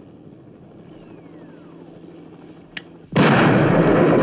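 Film sound effects of the Lotus Esprit submarine car firing a missile from underwater. A steady high electronic whine with a faint falling tone comes first, then a short click. About three seconds in there is a sudden loud rushing roar as the missile launches.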